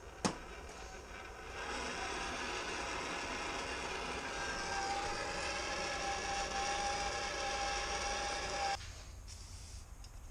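A handheld torch clicks as it is lit. Its flame then hisses steadily with a faint whistle for about seven seconds, heating the rotor's screws to loosen red Loctite, before it shuts off suddenly.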